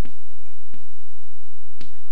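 Chalk tapping sharply against a chalkboard as axes and labels are drawn: three short clicks, the last the strongest, over the room's background hum.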